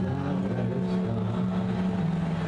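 Live folk music with no singing: an acoustic guitar and an upright bass hold steady chords.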